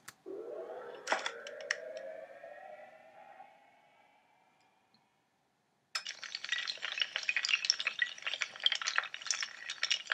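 Sound effects of toppling dominoes: first a rising tone lasting about four seconds with a few clicks, then, about six seconds in, a rapid dense clatter of many tiles falling against each other.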